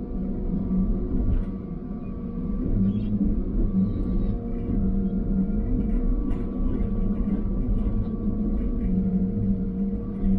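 Log loader's diesel engine and hydraulics running steadily, heard inside its cab: a low engine drone with a steady whine above it and a few faint clicks.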